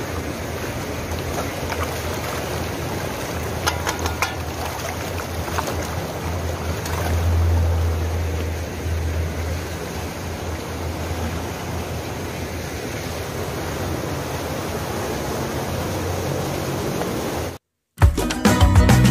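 Steady rush of water flowing and splashing through concrete trout-farm raceways. A low rumble swells about seven seconds in, and the sound cuts off abruptly just before the end.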